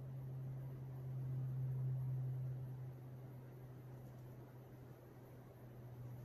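Quiet room tone: a steady low hum over faint background hiss, a little louder in the first half, with no distinct sound from the stick working the resin.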